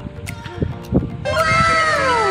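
Background music, joined about a second in by a loud call or sound effect made of several overlapping pitches that glide steadily downward.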